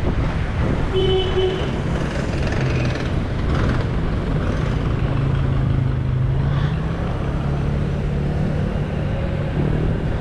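Street traffic: motor vehicles running and passing. A steady engine hum comes in from about halfway, and there is a short high tone about a second in.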